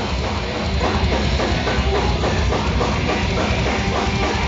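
A heavy metal band playing live: distorted electric guitars, bass and a drum kit, loud and dense without a break.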